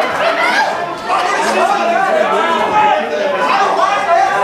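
Several spectators' voices talking over one another around a boxing ring, with the echo of a large hall.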